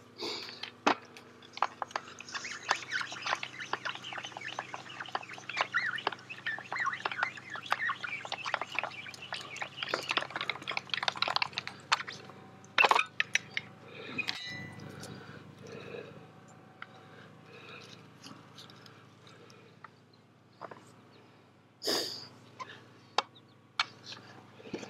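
Birds chirping over a pasture, mixed with clicks and knocks from a hand-operated polyethylene pipe butt-fusion machine being worked on a pipe joint. A sharp knock comes about halfway through and another near the end.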